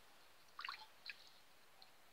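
Near silence with a few faint, short liquid sounds about half a second and a second in: a glass tea cup being dipped into a steel pot of liquid and lifted out full, dripping.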